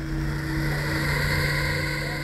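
Tense soundtrack drone: a steady low hum under a loud hissing swell that builds in just before and holds, a whoosh-like transition effect.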